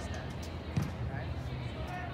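Faint voices and a steady low hum in a large indoor sports hall, with one dull thump a little under a second in.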